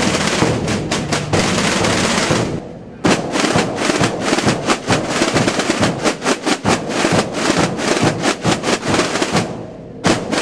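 A Calanda drum group's tambores and bombos (Holy Week drums and bass drums) beating together in a fast, dense rhythm. The drumming fades away a little before three seconds in, comes back abruptly, and fades again near the end.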